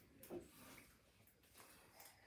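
Near silence: room tone, with one faint short sound near the start.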